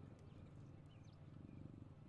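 Near silence: faint, steady low room tone.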